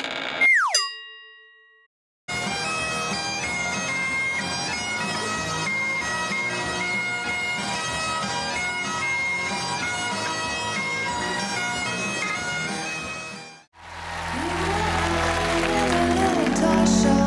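Bagpipes playing a melody over their steady drones, starting about two seconds in and stopping abruptly near the end. Before them, a short sound effect with a falling pitch glide and ringing tones; after them, a live band recording with crowd noise fades in.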